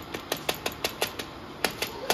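Rapid plastic clicking of a pocket sweetener-tablet dispenser being pressed over and over to push small tablets out onto the stone countertop. There are about ten sharp clicks, with a short pause a little past halfway.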